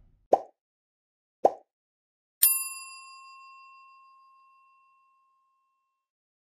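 End-screen subscribe-animation sound effects: two short, soft pops about a second apart, then a single bright bell ding that rings out and fades over about two seconds.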